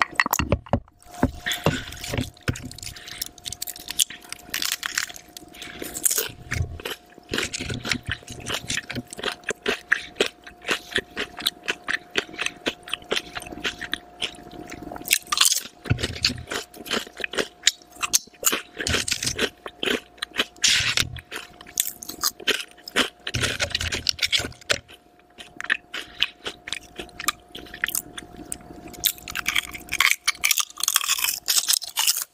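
Close-miked eating: crunchy bites and chewing of crinkle-cut potato chips and a turkey sandwich layered with chips, a dense run of irregular crackling crunches with a couple of short pauses. A faint steady tone sits underneath.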